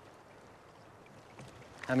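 Faint, steady lake ambience: a quiet even hiss with no distinct splashes or knocks. A man starts speaking near the end.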